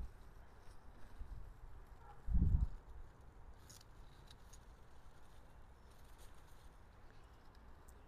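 Faint rustling of leaves and soil as a French breakfast radish is pulled up by hand, over a low rumble on the microphone. One short low thud comes about two and a half seconds in.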